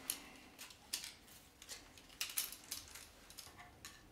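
Faint, scattered clicks and light taps of a folding carpenter's rule being opened out and laid against a wooden post, several of them close together in the middle.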